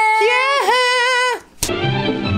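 A man sings out one long, high held note, with a brief dip in pitch midway, which stops about a second and a half in. After a short gap, outro music begins.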